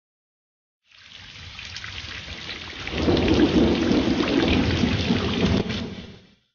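Rain with a low rumble of thunder, fading in from silence about a second in, swelling louder around three seconds in and dropping away near the end.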